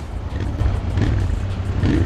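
Royal Enfield Interceptor 650's parallel-twin engine pulling under way, a deep grunt that swells about half a second in, with the new performance intake snorkel fitted.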